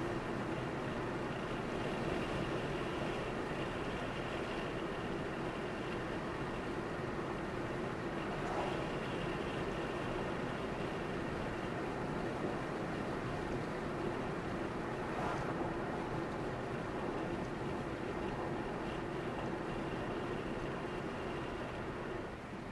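Steady road and engine noise of a car driving along a highway, heard inside the cabin as an even rumble with a steady hum. Two faint brief swishes come about 8 and 15 seconds in.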